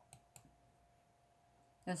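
Two quick light clicks close together, with a faint steady hum under them; a reading voice starts just before the end.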